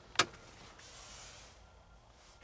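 A single sharp click just after the start, followed by a faint, even hiss for about a second.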